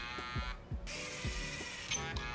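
LEGO Mindstorms Robot Inventor robot driving forward under its own motors: a steady gear whir with repeated ticks, which drops out briefly just after half a second in.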